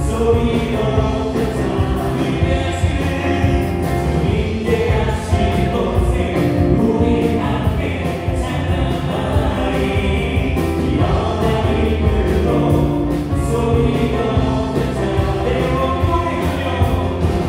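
Worship band playing a gospel song: electric guitars, keyboards, bass and drums, the drums keeping a steady beat under held chords.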